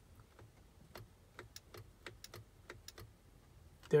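Faint, irregular clicking, about a dozen clicks, from a Toyota Camry Hybrid's headlight switch being turned on and off repeatedly on the steering-column stalk, with the info button held. This is the switch sequence that opens the car's hidden diagnostic display.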